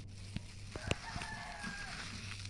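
A rooster crowing in the background: one held call of about a second, starting just before the middle and dipping slightly in pitch as it ends. Over it come a few small clicks and rustles from a plastic-gloved hand rolling a biscuit ball through chocolate sprinkles in a plastic bowl.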